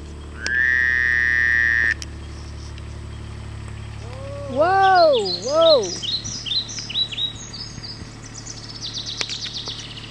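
Kubota RTV utility vehicle's diesel engine idling low, then cutting off about five seconds in as it parks. A loud steady beep about a second and a half long sounds near the start. Around five seconds a voice calls out twice in rising-and-falling tones, and birds chirp in quick runs through the second half.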